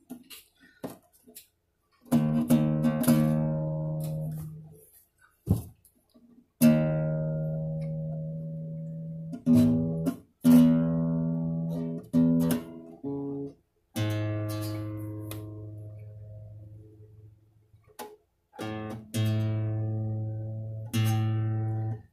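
Nylon-string classical guitar, its freshly installed strings plucked one at a time and left to ring while being tuned, about nine single notes, each fading over a few seconds. Short clicks fall in the gaps between notes.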